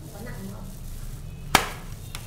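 Kimchi and sauce being mixed by a gloved hand in a stainless steel pot, with one sharp knock against the pot about one and a half seconds in that rings briefly.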